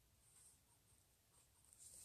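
Near silence with the faint scratch of a pen on paper: a couple of brief strokes.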